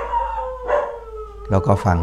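A dog howling: one long, slowly falling call that carries on under speech near the end.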